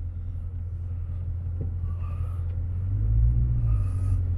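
Dodge Challenger SRT's V8 engine rumbling low and steady, heard from inside the cabin while the car rolls slowly, swelling louder about three seconds in.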